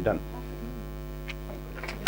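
Steady electrical mains hum on the recording, with a short word at the start and a couple of small clicks near the end.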